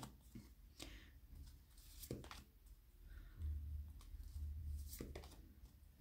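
Tarot cards being handled: a few faint ticks and rustles as cards are drawn from the deck and laid on the table, over a low hum that swells for about a second and a half past the middle.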